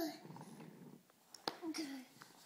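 A toddler's voice trails off, then a single sharp knock about halfway through, typical of wooden toy train pieces being handled on the track.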